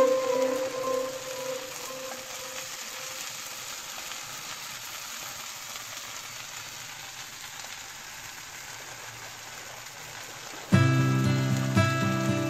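Pieces of stale bread frying in oil in a pan, with a steady sizzling hiss. Guitar music fades out over the first couple of seconds and cuts back in suddenly near the end.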